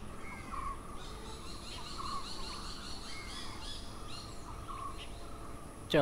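Several birds chirping and calling, short repeated rising and falling notes, over a faint steady outdoor background.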